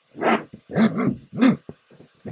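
A dog barking three times in quick succession, each bark short with a pitch that rises and falls.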